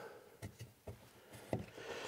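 A few faint wooden knocks and taps, about three in two seconds, as a small cut-out wooden figure is handled and set down on a wooden board.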